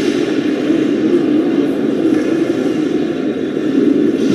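Steady, even background rumble of an indoor ice hockey arena during a stoppage in play, with no distinct impacts or calls standing out.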